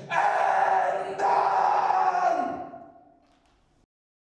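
A man yelling into a hand-held microphone in two long, loud shouts, the second fading away to silence near the end.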